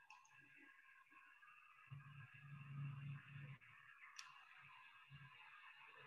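Near silence: faint room tone over a video call, with a few faint clicks.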